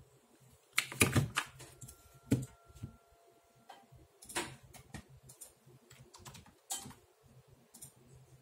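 Irregular sharp plastic clicks and knocks as a Speed Stacks timer is set down on its mat and a Pyraminx puzzle is handled. The loudest cluster comes about a second in.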